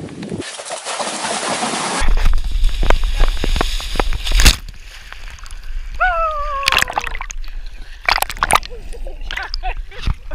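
Swimmers splashing through choppy open water, with water sloshing and slapping around a camera held at the surface and a heavy low rumble of wind or water on the microphone; this starts suddenly about two seconds in, after a steady hiss. About six seconds in, a swimmer lets out one falling cry.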